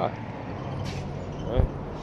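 Steady low background rumble of vehicle traffic during a pause in speech, with a short hiss just before one second in and a brief low thump near the end.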